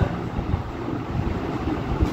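Steady background noise: a low rumble with a faint hiss, with no distinct events.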